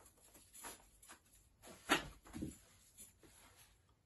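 Faint rustling and brushing of an 11.5 mm rope being handled and drawn through a double bowline knot, with a louder brush about two seconds in.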